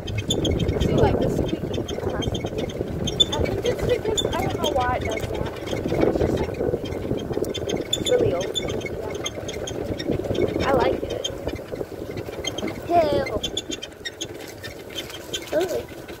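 Golf cart moving along, a continuous low rumble and rattle of the ride with wind on the microphone. Voices call out briefly a few times over it.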